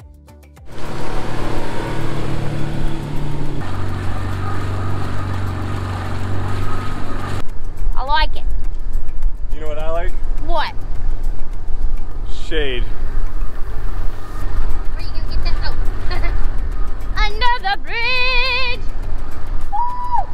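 Wind rushing over the microphone and a motor's steady hum from a small boat under way at speed. In the second half, voices call out several times in high, gliding whoops without words.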